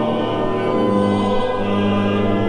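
Pipe organ accompanying a congregation singing a hymn together, in slow, long-held notes.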